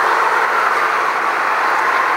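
Steady, loud vehicle noise with no distinct events in it.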